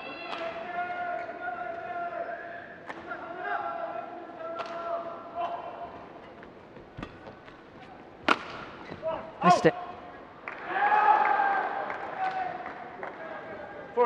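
Badminton rally on an indoor court: shoes squeaking on the court floor and rackets striking the shuttlecock, with two sharp hits about eight and nine and a half seconds in as the point ends. A loud shout or cheer follows about ten to twelve seconds in.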